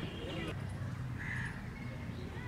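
A bird calling briefly about a second in, over faint distant voices.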